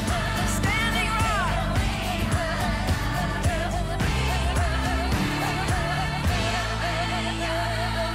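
A pop song: a singer with a wavering, vibrato-laden voice over a band with a steady beat and bass.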